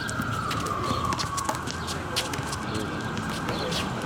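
Distant emergency-vehicle siren, its tone sliding down in pitch and fading over the first second and a half, over a steady low city rumble, with scattered short sharp high clicks.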